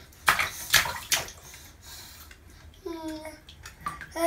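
Bathwater splashing: three short splashes within the first second or so, from babies moving in a shallow bath.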